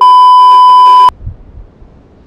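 Loud, steady electronic test-tone beep, the kind played over TV colour bars, held for about a second and cutting off sharply.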